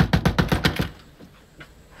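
A rapid run of sharp knocks, about ten a second, lasting about a second before it stops.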